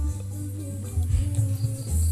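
Background instrumental music with a steady low bass and a few held notes.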